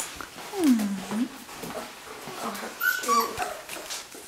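Three-week-old puppies whimpering: a few drawn-out cries, the longest about a second in, dipping in pitch and rising again, and a higher, shorter cry near the end.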